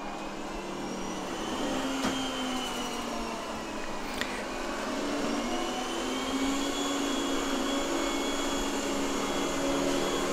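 Yeedi Vac Max robot vacuum running on a shaggy rug with its suction boosted by the carpet sensor: a steady whir whose pitch drifts slowly, growing a little louder over the first couple of seconds.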